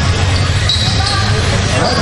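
Indoor RC raceway ambience during a Mini-Z race: background voices over a steady low hum, with a few brief high-pitched tones.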